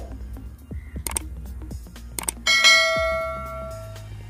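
Two sharp clicks, then a bell chime that rings out about two and a half seconds in and fades away over about a second: the sound effect of a subscribe-button animation. Steady background music runs underneath.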